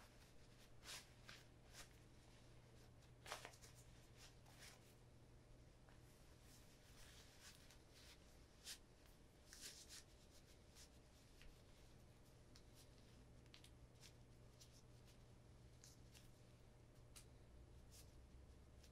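Near silence: room tone with a faint steady low hum and scattered soft rustles and clicks, the loudest about three seconds in.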